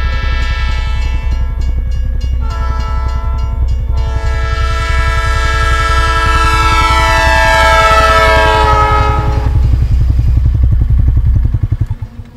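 A train passing with a steady rumble and rhythmic wheel clatter, sounding its horn: a short blast about two and a half seconds in, then a long blast whose pitch falls as the train goes by. The sound cuts off just before the end.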